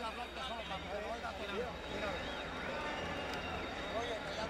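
A man talking at close range, over a steady background murmur of an arena crowd.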